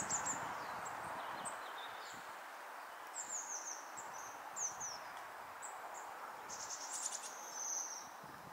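Bohemian waxwings calling: a scatter of high, thin trilling notes, with a longer trill near the end, over steady background noise.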